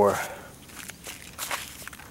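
Footsteps across plastic mulch sheeting in a garden bed: a few short, faint steps in the second half, after the end of a spoken word.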